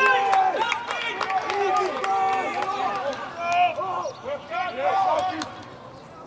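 Several voices shouting short calls to one another across a rugby league pitch, overlapping, with a few sharp knocks in the first couple of seconds.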